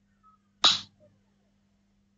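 A single short, sudden, hissy vocal burst from a person, like a sneeze, about half a second in. A faint steady low hum runs underneath.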